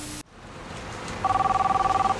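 A burst of TV static with a low hum cuts off about a quarter second in. About a second later an electronic telephone ring, two tones together with a fast flutter, sounds for about a second.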